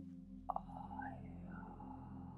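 A woman's soft, breathy voice, whispered rather than spoken, over a low steady hum, with a small click about half a second in.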